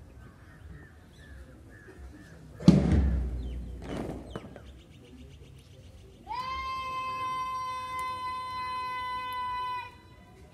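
A loud thump about three seconds in that dies away over a second, then one long held bugle note that starts about six seconds in and cuts off just before the end.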